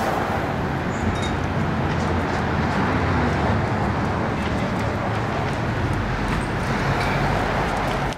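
Steady street traffic noise with a low engine rumble.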